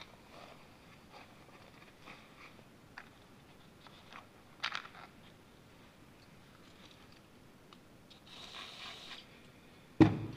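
Faint handling of small carburetor parts with gloved hands, with a few light clicks and taps. Near the end comes a hiss of about a second: an aerosol can of carb cleaner spraying the slide needle to dissolve its varnish.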